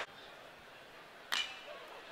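A metal baseball bat strikes a pitched ball once, about a second in: a sharp ping with a brief ring. It sounds over faint ballpark ambience.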